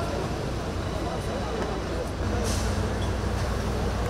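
Fire truck engines running steadily in a low drone while their aerial ladders spray water, under the talk of an onlooking crowd, with a brief hiss about halfway through.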